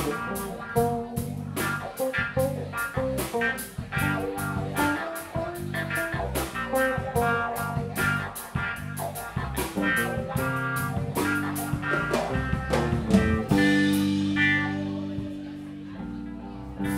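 Live rock band playing: electric guitar, bass guitar, keyboards and a drum kit, with a steady cymbal beat. About thirteen seconds in, the drums stop and the band holds a chord that rings out and fades.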